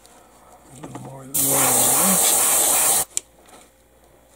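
An airbrush hissing: one burst of spray about a second and a half long that starts and stops abruptly.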